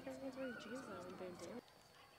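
A faint, wavering voice that stops suddenly about one and a half seconds in, followed by near silence.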